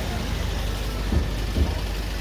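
Steady low rumble of outdoor street noise picked up by a handheld camera, with two soft low thumps a little past the middle.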